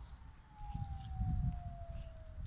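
Wind rumbling on the microphone in gusts, with a faint thin tone sliding slowly down in pitch behind it.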